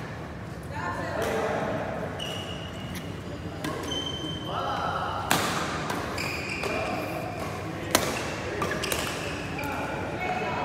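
Badminton rackets hitting a shuttlecock in a doubles rally, with sharp cracks about five and eight seconds in and lighter hits between them. Short high squeaks of court shoes on the floor are mixed in, all ringing in a large hall.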